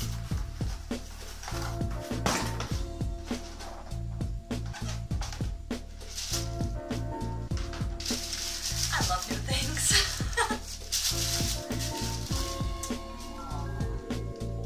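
Tissue paper and cardboard rustling and crinkling as a shoebox is unpacked, loudest for a few seconds midway, over background music with a steady bass line.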